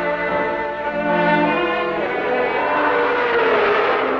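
Film score music. Held orchestral chords give way about halfway through to a denser swelling wash, with a falling glide near the end.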